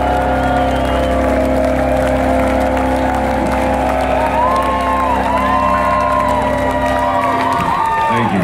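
Live rock band holding a sustained chord, with electric guitar notes bending up and down over it in the second half. The low end drops out about seven seconds in, and the crowd cheers.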